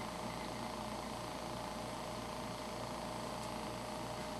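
Steady low background hum and hiss: room tone, with no distinct sounds.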